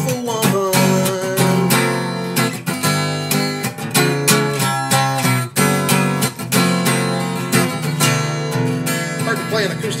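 Acoustic guitar, capoed, strummed in a steady rhythm while a man sings along.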